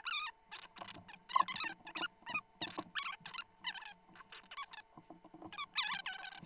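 Computer keyboard and mouse in use: an irregular run of sharp clicks and taps, with squeaks among them, as a short password is typed in.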